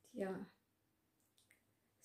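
A woman says a short 'yeah', then near silence broken by two faint clicks about a second and a half in.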